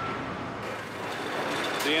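Heavy machinery running steadily, the engine noise of the tree-planting rig working on the plaza. The sound shifts about half a second in, and a voice begins near the end.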